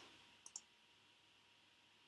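Near silence with a faint, quick double click of a computer pointer button about half a second in, selecting text on screen.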